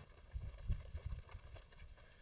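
Faint footsteps of a person walking across a floor: a run of soft, uneven low thuds.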